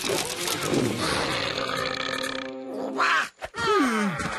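Cartoon creature grunting and growling over noisy fight sound effects. A loud burst comes about three seconds in, and a grunt with a falling pitch comes near the end.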